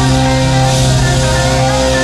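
Live rock band holding one big sustained closing chord, a 'trash can ending': electric guitars and keyboard ringing steadily while drums and cymbals crash and roll underneath.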